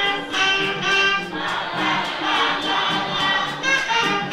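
Live Afrobeat band music: a melody of short held notes, like horn or ensemble voice lines, over steady percussion ticking about four times a second.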